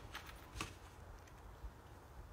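Faint rustle and crisp ticks of a folded paper card being handled and opened, the clearest about half a second in.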